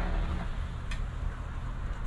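A metal coin scratching the latex off a paper scratch-off lottery ticket, with one sharp click about a second in, over a steady low rumble.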